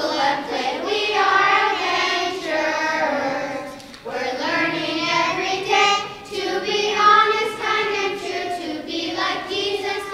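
A group of young children singing together in unison, with a short break between phrases about four seconds in.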